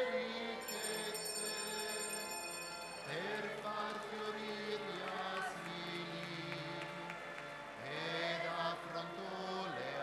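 Choir singing a slow liturgical chant, with held high tones early on under the voices and sung phrases sliding in pitch.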